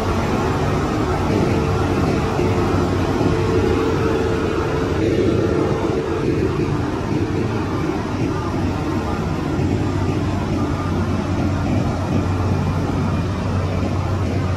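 Heavy diesel machinery running steadily: the engines of a Shantui DH17C2 crawler bulldozer and a loaded dump truck at work, a constant low drone with a steady whine over it that fades out about six seconds in.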